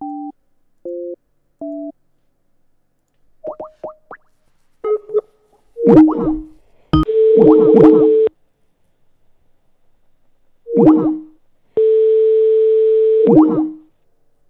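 Telephone line tones as an outgoing call is placed: four short two-tone beeps, then two rings of the ringback tone about a second and a half each, with falling electronic swoops between them.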